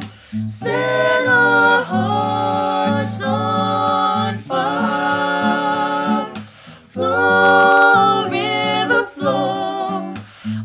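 Three voices, a woman's and two men's, singing together in harmony over an acoustic guitar, in phrases with short breaks between them.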